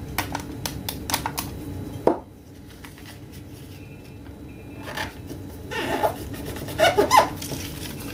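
Paper and card being handled at a table as a sticker is pressed and folded over a small paper card case: soft rustles and light taps, with one sharp click about two seconds in and more rustling near the end.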